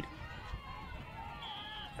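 Faint open-field sound of distant players' and spectators' voices, with a short, high umpire's whistle near the end stopping play for a shot gone wide out of bounds.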